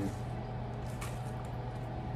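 Steady low hum of room tone with one faint click about halfway through.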